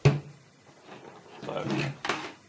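Two sharp plastic clicks about two seconds apart as a hair dryer's mains plug is handled and pushed into an extension-cord socket on a bench.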